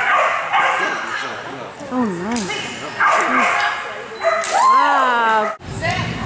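A dog yipping and giving short cries that rise and fall in pitch, the longest and loudest a little before the end, over a background of people's voices. The sound breaks off suddenly just before the end.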